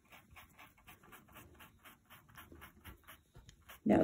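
Small stiff paintbrush (a 'scrubby') scrubbing fabric paint into a cloth napkin. The faint brushing comes in quick, short, even strokes, about five or six a second.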